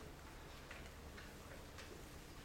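Hushed auditorium room tone with a low hum and three faint, short clicks about half a second apart.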